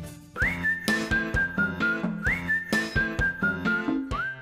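A short TV segment-transition jingle with a whistled tune over a light beat. It is a rising whistle swoop followed by a few held notes stepping down, played twice.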